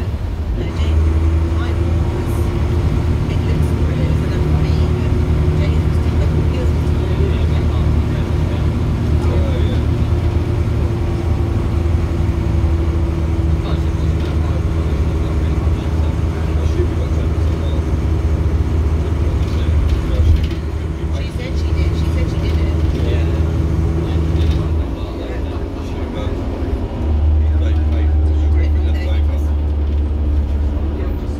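Volvo Ailsa double-decker bus's front-mounted turbocharged six-cylinder diesel engine under way, heard from inside the lower deck: a deep steady drone with a continuous whine above it. The engine eases off about 25 seconds in, then pulls hard again a couple of seconds later.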